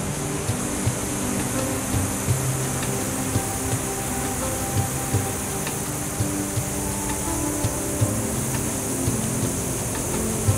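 Background music: sustained low notes with intermittent drum hits, over a steady high hiss.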